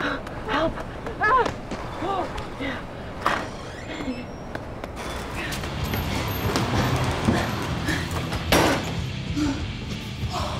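A person's short voiced sounds in the first few seconds, then a steady bed of film music and ambience. About eight and a half seconds in, a door bangs shut.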